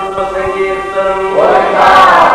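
A group of voices singing together: a long held note, then the voices swell and rise in pitch about a second and a half in.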